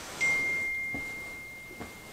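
A single clear, high chime tone, struck about a quarter second in and fading away slowly.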